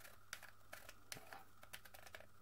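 Faint, irregular plastic clicks from a hot glue gun's trigger and feed mechanism as the trigger is squeezed, the repaired feed ramp pushing against the glue stick.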